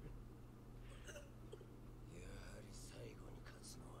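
Faint dialogue from the subtitled anime episode playing quietly, about 1 to 3.5 s in, over a steady low electrical hum.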